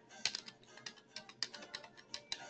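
Typing on a computer keyboard: about a dozen quick, uneven key taps, faint.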